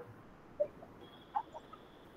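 A pause between spoken sentences: quiet room tone with a few faint, brief sounds and a faint steady high tone in the second half.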